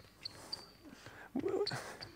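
Sneakers squeaking on a hardwood sports floor during a side-stepping shuffle: a few short, high-pitched squeaks.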